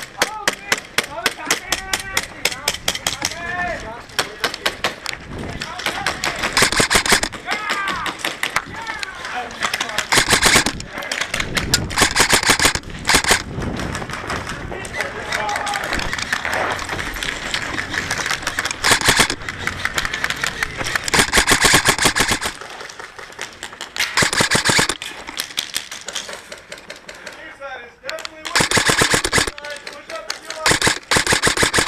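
Airsoft guns firing rapid full-auto bursts, a fast run of sharp clicks. The firing goes on almost without a break, eases off in the last third, then picks up hard again near the end.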